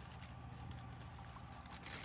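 Faint handling of a miniature cardboard shoe box and tissue paper, a few light clicks, over a steady low hum.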